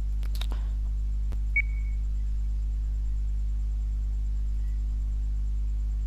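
Steady low electrical hum on the recording, with a few faint clicks in the first second and a brief high tone about a second and a half in.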